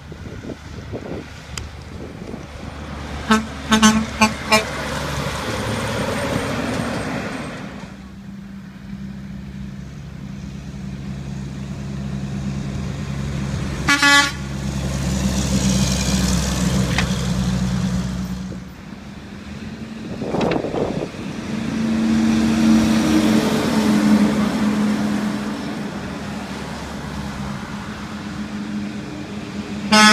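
Heavy diesel trucks passing close by with engines rumbling, and short truck horn blasts: a quick series of honks about three to four seconds in, the loudest sound, and one brief toot around fourteen seconds as a dump truck goes by.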